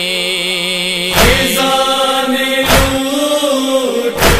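An a cappella nauha lament between lyric lines: voices hold a sustained wordless melodic tone over the rhythm of chest-beating (matam) thumps, which fall about every second and a half, twice here.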